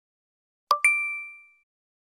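Logo sound effect: a short click followed at once by a bright two-pitched ding that rings and fades out in under a second.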